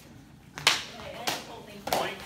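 Three sharp clacks about two thirds of a second apart as synthetic training shotels strike in a fencing exchange.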